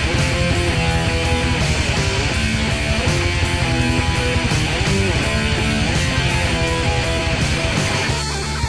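Instrumental passage of a rock song: electric guitar playing held and bent notes over bass and drums with a steady beat, no vocals.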